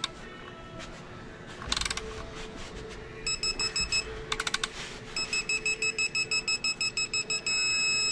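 Digital torque-angle wrench tightening an engine main bearing bolt: short spells of ratchet clicking, and high electronic beeps at about five a second as the bolt turns toward its 120-degree target. The beeping turns into one steady tone near the end, signalling that the set angle has been reached.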